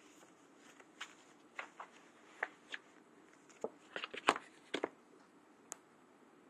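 Handling of a deck of oracle cards as one is drawn: a run of short, irregular clicks and taps, bunched together a little past the middle, over faint room hiss.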